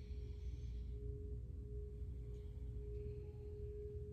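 A steady sustained tone at a single pitch, held unchanged throughout, over a low rumble.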